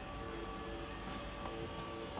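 Quiet, hissy room tone with a faint, sustained background music drone, a few soft held tones that shift now and then.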